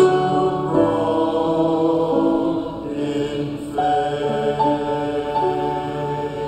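A small group of men's voices singing a slow sung part of the Mass together, holding long notes that change every second or so.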